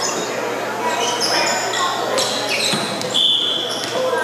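Balls thudding on a hardwood gym floor, with short high sneaker squeaks and a held high tone near the end, over voices echoing in a large hall.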